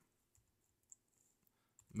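A few faint, scattered clicks of computer keyboard keys being typed, the sharpest about a second in.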